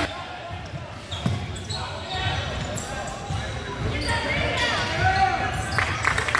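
Indoor basketball game: a ball bouncing on the hardwood court with occasional thuds and knocks, and raised voices from players and spectators echoing in the gym, louder about four to five seconds in.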